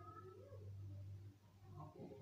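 Near silence: faint room tone with a low steady hum that fades about halfway through.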